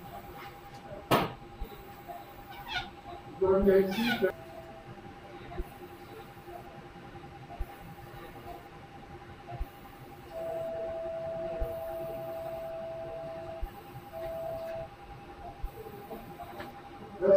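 Electrosurgical generator activation tone as the monopolar scissors are fired: a steady beep held about three seconds, then a shorter one. Under it is a faint steady hum of operating-room equipment, with a sharp click about a second in and brief distant voices around three to four seconds.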